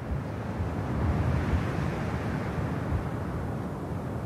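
A low rumbling noise without a clear tone steps up at the start, swells over the first second, then holds steady.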